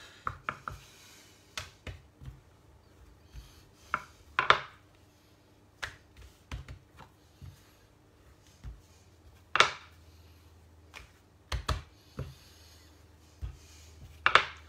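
Scattered knocks and light clatter of utensils on a kitchen work surface while flatbread dough is rolled out, the loudest knocks about four and a half and nine and a half seconds in.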